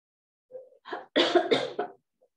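A woman coughing: a faint catch in the throat, then a quick run of about four loud coughs.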